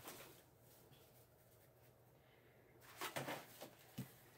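Mostly near silence, then a brief soft rustle about three seconds in and a light click at the very end, as a bundle of rolled, plastic-wrapped diapers and a cardboard base disc are handled on a cutting mat.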